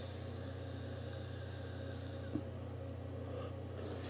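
Quiet, steady low hum with a faint airy draw as a man takes a long drag on an Evod BCC tank e-cigarette, and one soft click about two seconds in.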